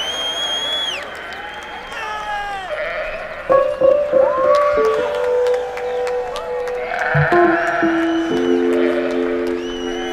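Sheep bleating, played over the sound system as a song's intro, with several bending calls. About three and a half seconds in a keyboard enters with long held notes, building into a sustained chord near the end.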